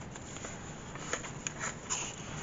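Coffee-dyed paper pages of a handmade journal being turned by hand: a quiet paper rustle with a couple of faint ticks.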